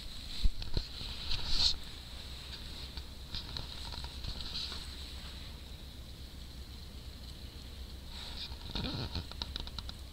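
Nylon puffy-jacket fabric rustling and handling noise as a dog is held and stroked in a lap, over a low steady rumble on the microphone. The rustles and small knocks are busiest in the first couple of seconds, then soft and intermittent.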